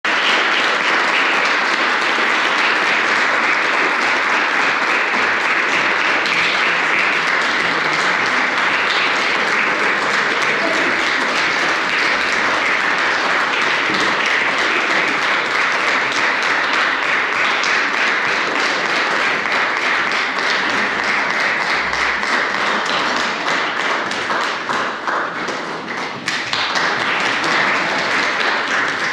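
Audience applauding steadily, the clapping thinning briefly near the end before picking up again.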